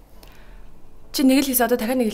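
A short spoken phrase starting about halfway through, after a second of quiet.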